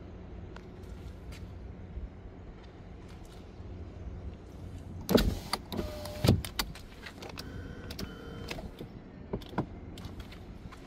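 Hyundai Sonata front door handled: two loud knocks with rattles about five and six seconds in, then the power window motor whining steadily for about a second.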